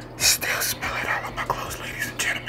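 Beatboxing into a cupped hand: a quick run of breathy hisses and clicks.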